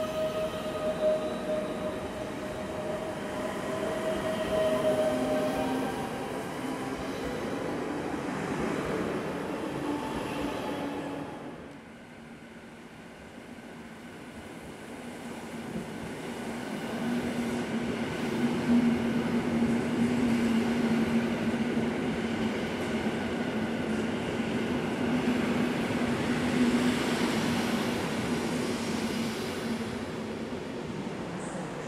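Electric multiple units at a station platform. First a coupled EN99 and EN64 pull away with a steady electric whine over wheel rumble, which breaks off about eleven seconds in. Then a pair of EN57FPS units arrive with a steady low hum and wheel noise that grows louder as they pass.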